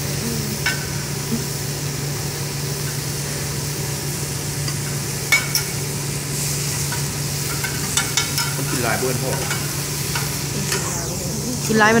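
Vegetables sizzling on a hot teppanyaki griddle, with the chef's metal spatula clicking and scraping on the steel plate a few times, over a steady low hum.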